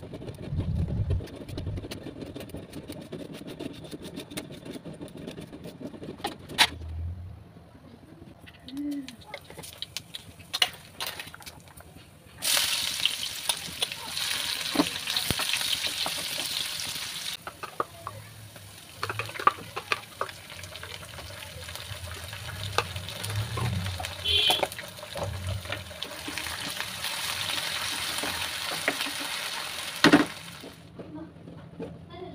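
A knife chopping onion on a stone board, a quick run of clicks, then sliced onions frying in hot oil in a kadhai: a sizzle that starts suddenly near the middle, eases off, and swells again near the end, with a wooden spatula stirring through it.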